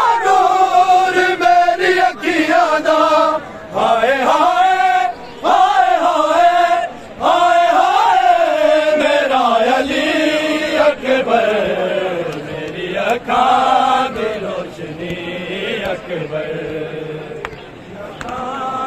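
Large crowd of men chanting a noha, a Shia mourning lament, in unison with long drawn-out wavering lines. The chanting grows quieter over the second half.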